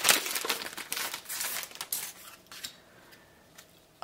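A trading-card booster pack wrapper being torn open and crinkled: a quick run of crackling rustles that dies down after about two seconds.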